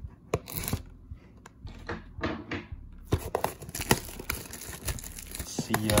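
Cellophane shrink wrap being torn and crumpled off a cardboard trading-card box: a run of short crackles and rips.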